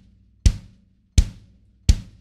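Kick drum struck three times, evenly about 0.7 s apart, each a sharp attack with a short, dry decay. The kick is tuned about as low as it goes with the heads barely finger-tight, and is hit with the hard side of the beater on a Kevlar impact pad for extra attack.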